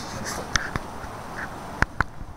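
A few short, sharp animal calls over a steady background hiss.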